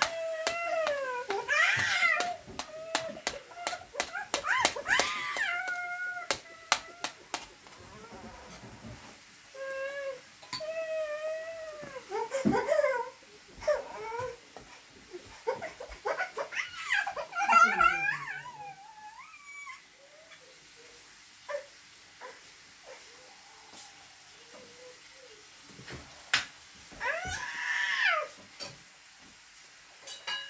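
Repeated high-pitched, wavering cries: about five drawn-out calls whose pitch rises and falls, the last one near the end, among scattered light clicks.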